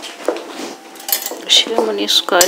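A metal teaspoon and ceramic coffee cups clinking as they are handled, with a few sharp clinks in the second half.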